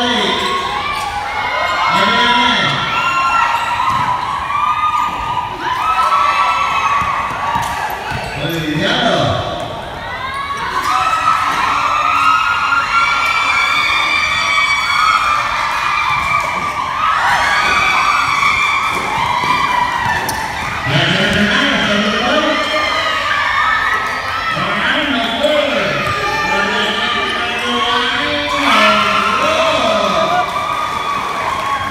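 Sounds of an amateur basketball game in a gym: players and spectators shouting and calling out, with a basketball being dribbled on a hardwood court. The sound echoes in the hall.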